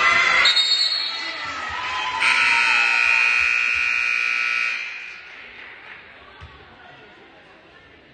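Basketball gym scoreboard horn sounding as one steady blare for about two and a half seconds, starting about two seconds in, after a burst of crowd voices at the start.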